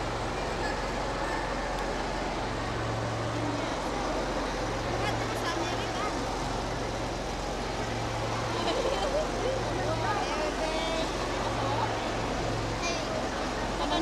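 Crowd babble: many people talking at once in a packed hall, no single voice standing out, with a low hum that comes and goes several times.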